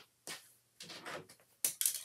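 Paper and crafting adhesive being handled at a work table: a few short rustles, with a louder, sharper rustle about a second and a half in.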